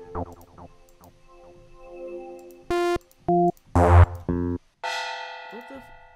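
Preview notes from FL Studio's stock synth plugins, played one after another with a different tone each time. Short plucked notes come first, then several louder chords, and a last note near the end is held and fades away.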